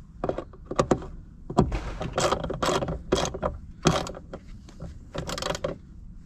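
Hand socket ratchet clicking in short bursts of strokes, snugging up the mounting bolts of a newly installed wiper motor.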